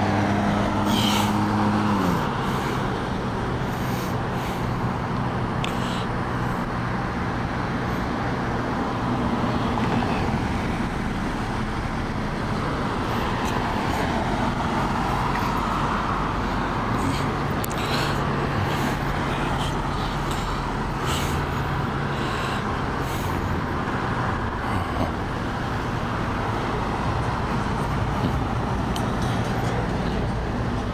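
Street traffic: cars passing on a multi-lane road over a constant low rumble. An engine note near the start drops in pitch about two seconds in, and a swell of passing-car noise comes near the middle.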